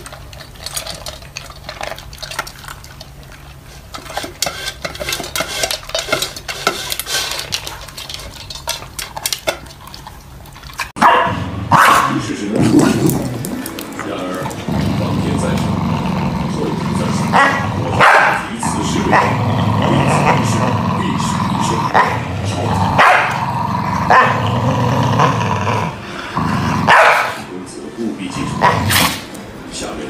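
Corgis eating from a shared bowl with quick clicking and crunching, then, about eleven seconds in, two corgis growling steadily at each other over a toy, broken by sharp barks every few seconds.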